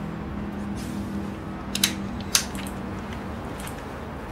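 A few short, sharp clicks and light taps of small hard objects over a low steady hum; the two loudest clicks come close together about two seconds in, with fainter ticks after.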